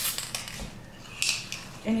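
A metal aerosol spray can being handled, with a sharp clink at the start and a short high hiss a little over a second in.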